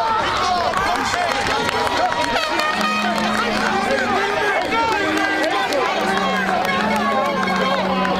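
Many voices talking and shouting over one another: football players and coaches crowded together in a sideline huddle. A low, steady held tone sounds on and off through the second half.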